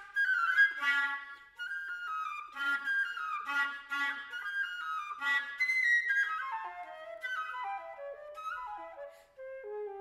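Solo concert flute playing a fast passage of short, detached notes, then a descending run in the second half that settles on a held low note near the end.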